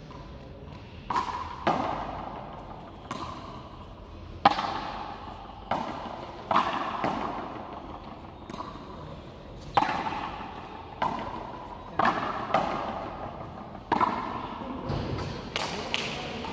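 Hand-pelota rally: a hard pelota smacked by players' hands and hitting the frontón wall and floor, about a dozen sharp irregular cracks, each ringing on in the echo of the covered court.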